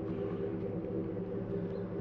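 A steady low hum of several unchanging tones, like an idling engine.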